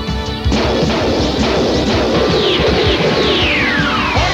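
Cartoon soundtrack music with a crash sound effect that hits suddenly about half a second in. Falling whistle-like glides follow, the longest sliding down near the end.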